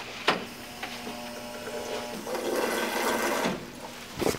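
Wall-mounted stainless-steel drinking fountain in use: a click as the button is pressed, then a steady hum with water running. The running water grows louder about two seconds in and stops shortly before the end.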